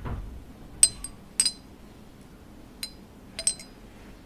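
Metal spoons and forks clinking against ceramic plates in a few sharp, ringing chinks: one about a second in, another half a second later, then a quick pair near the end. A brief low rumble comes in at the very start.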